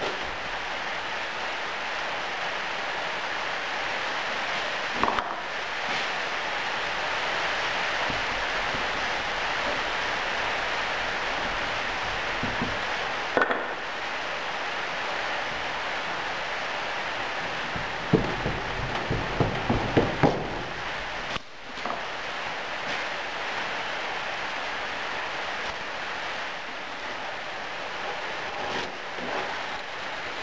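Hands packing and ramming moulding sand into a small moulding box, with a steady hiss throughout, a few single knocks and a quick run of knocks and thuds about two-thirds of the way through. Near the end a straight edge scrapes across the box to strike the sand off level.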